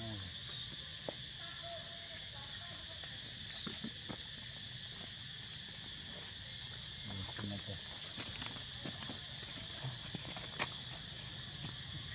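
Steady, high-pitched drone of insects, with a few faint clicks and taps scattered through it.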